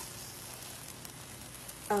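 Pancake batter and an egg frying in a frying pan, a steady sizzle.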